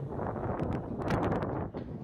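Wind buffeting the microphone over outdoor crowd noise, with a quick run of sharp clicks about halfway through.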